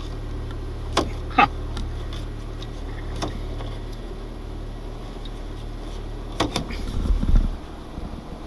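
Jeep engine idling steadily, heard from inside the cab, with sharp clicks of the interior door handle being worked on a locked door: twice about a second in, once around three seconds, and a couple more near six and a half seconds.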